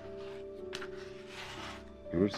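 Background film score of steady, sustained notes, with a few faint rustles over it.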